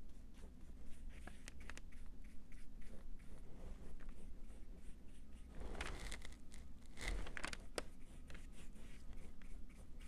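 Faint scratchy strokes of a paintbrush on small wooden cutouts, with a few light clicks and knocks of brush and paint pots being handled a little past halfway, over a steady low hum.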